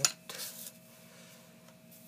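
A single sharp click at the start, then a short rustle as the scratch-off lottery ticket is handled and slid across the table, followed by quiet room tone with a faint steady hum.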